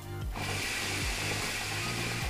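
Shisha being drawn on through its hose and an Ice Bazooka cooling mouthpiece: a steady hiss of air pulled through the water base, lasting just under two seconds, over background music with a low beat.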